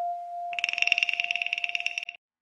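Electronic synthesizer sound in an intro soundtrack: one steady mid-pitched tone, joined about half a second in by a fast, high-pitched trill. Both stop together and abruptly.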